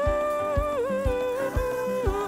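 A humming voice for a cartoon hummingbird, holding a slow wavering melody. It sits over background music with a soft low beat about twice a second.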